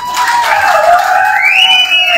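A high-pitched whistle-like tone that glides slowly in pitch, then rises sharply about one and a half seconds in and holds briefly before falling away.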